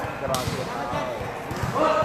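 A volleyball thudding several times at irregular intervals, with voices over it.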